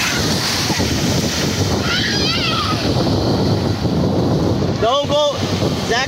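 Ocean surf breaking and washing up the beach in a steady rush, with wind buffeting the microphone. Children's voices cry out over it: a brief high call about two seconds in and a louder shout near the end.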